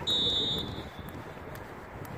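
A single short, high-pitched steady beep lasting under a second, heard over a continuous background hubbub.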